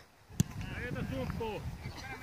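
A football kicked once, a sharp thud about half a second in, followed by players' voices calling out across the pitch.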